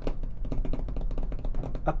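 Typing on a computer keyboard: a quick run of light key clicks, about ten a second.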